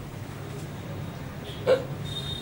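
A pause in a man's speech over a low steady hum, broken once near the end by a short vocal sound.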